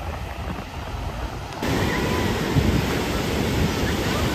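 Ocean surf washing in, with wind rushing on the microphone. The noise jumps abruptly louder about a second and a half in.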